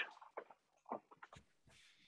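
Near silence in a gap between speakers on a video call, broken by a few faint, brief sounds in the first second and a half.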